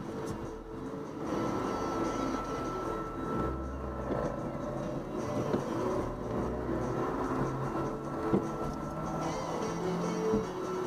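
Car engine running as the car is driven slowly a short way and repositioned, with a low rumble strongest in the middle seconds. Music plays in the background.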